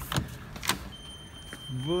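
Glass shop door being pushed open, with two sharp clicks from its handle and latch. About a second in, a steady, high-pitched electronic tone starts and holds without fading, and a man's greeting begins near the end.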